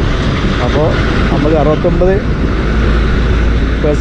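Wind buffeting the microphone while riding: a loud, steady low rumble with a noise hiss over it. A man's voice talks through it for a second or so, starting just under a second in.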